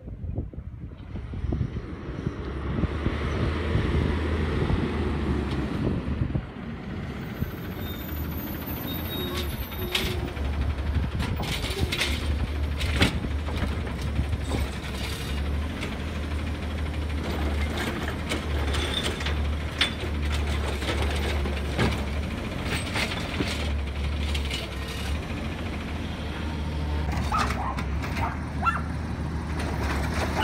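Automated side-loader garbage truck running steadily as it pulls up to the curb, with a brief hiss of air brakes about a quarter of the way in. Then the hydraulic arm works, with repeated clanks and knocks as it grips, lifts and tips a wheeled trash cart into the hopper.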